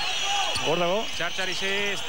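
Live basketball game sound: steady arena noise from the court and crowd while play goes on, with a TV commentator's voice over it from about half a second in.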